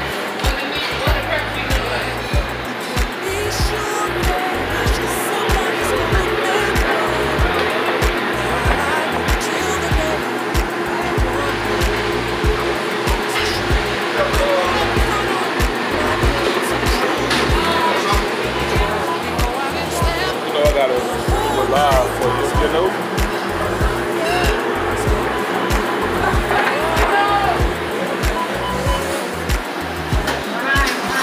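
Busy commercial kitchen ambience: a steady hum under background music and indistinct voices.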